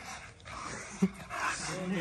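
A dog whimpering softly up close.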